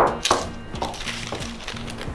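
Greaseproof paper rustling as it is pressed into the bottom of a metal cake tin, with a short knock or clink right at the start. Soft background music plays underneath.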